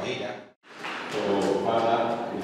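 Voices through a church PA in a large hall: a man's amplified voice, cut by a brief total drop-out about a quarter of the way in where the recording is edited, then voices resuming with a sung, choir-like quality.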